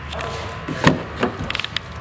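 Rear side door of a Lexus RX350 being opened: a loud latch clunk just before a second in, a second knock, then a quick run of light clicks.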